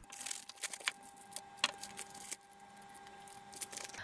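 Faint rustling and a few light clicks and clinks of a padded mailer and its contents being handled and opened, over a faint steady hum.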